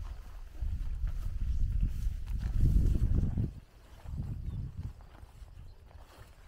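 Wind buffeting the microphone in low gusts, a long one starting just under a second in and dying away at about three and a half seconds, then a shorter one a moment later.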